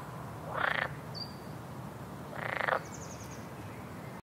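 A frog croaking twice, two short pulsed croaks about two seconds apart, with a couple of faint high chirps between and after them over a steady ambient background.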